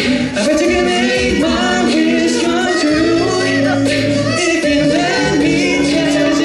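Male a cappella group singing live through microphones in close harmony, with a deep sung bass line and a steady beat about twice a second.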